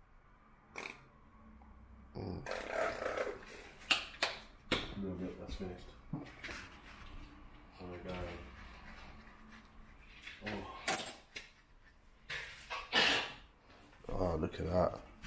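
A plastic squeeze bottle of barbecue sauce being squirted over waffles, among scattered clicks and knocks of kitchen handling, with a few low, indistinct voice sounds.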